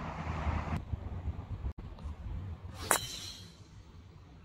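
A driver striking a black Volvik Vivid golf ball off the tee: one sharp, short crack about three seconds in, after a rushing noise at the start.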